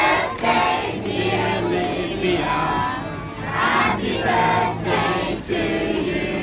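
Many voices singing together, choir-like.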